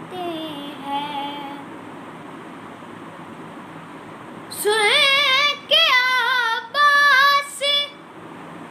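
A boy singing an Urdu manqabat, a devotional song in praise of Imam Ali, unaccompanied, with wavering, ornamented notes. A sung phrase trails off in the first second or two. After a pause of about three seconds, a louder phrase starts about four and a half seconds in and breaks off near the end.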